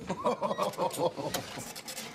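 A man laughing in a quick run of short, repeated breathy pulses that fade after about a second.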